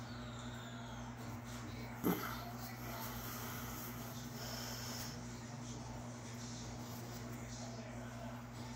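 A man's short pained grunt or snorted breath about two seconds in, while he squeezes a cyst on his arm, over a steady low electrical hum.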